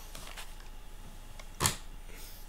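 Plastic cassette cases being handled and shuffled, with one sharp clack a little past halfway.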